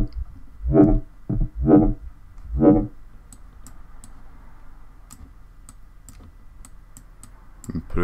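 Four short notes of an FM sine-wave synth lead in Serum, played through a band filter moved by an LFO, about a second apart. After them come a series of faint mouse clicks.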